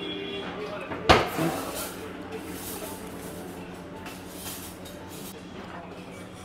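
Cutlery strikes a metal thali plate with one sharp clink about a second in, over a steady restaurant background of faint voices and music.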